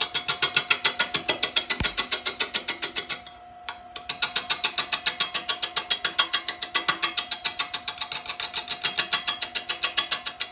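A turning tool cutting a large wooden blank on a wood lathe, making rapid, even knocks, about eight a second, over a steady hum. The knocking stops for under a second around three seconds in, then resumes.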